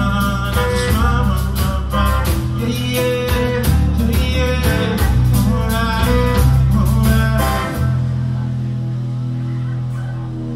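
Live rock band playing an instrumental passage with electric guitar, bass, drums and keyboard. About eight seconds in the drums stop and a final chord rings out as the song ends.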